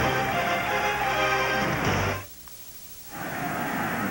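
Television sports-broadcast music plays, then cuts off about two seconds in. After about a second of much lower sound, the ballpark crowd noise comes back.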